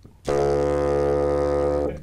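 A bassoon plays one long, low, steady note for about a second and a half.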